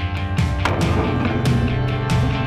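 Background rock music with guitar, with sharp percussive hits.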